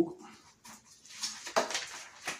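Thin Bible pages being flipped quickly by hand: a series of short papery rustles.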